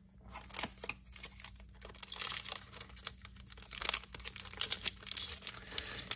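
Foil wrapper of an Upper Deck hockey card pack crinkling and tearing as it is ripped open by hand in a run of short, uneven rips. The pack is hard to rip open.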